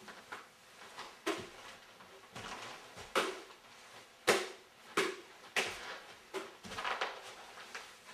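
Repeated whacks of an Unbreakable walking-stick umbrella against a watermelon: about seven sharp, irregularly spaced blows, the loudest about halfway through.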